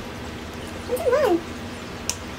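One short wavering vocal call about a second in, its pitch rising and then falling, lasting about half a second.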